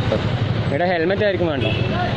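Busy street traffic: the low, steady running of motorcycle and scooter engines close by. A person's voice talks over it for under a second, about a second in.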